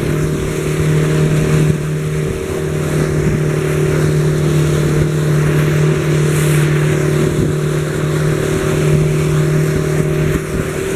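Motorboat engine running steadily at speed, a constant low drone over the rush of water churning in the wake and wind on the microphone.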